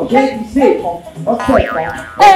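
Voices over music, then, a little before the end, a comic boing-like sound effect: a quick wobbling glide up and down in pitch.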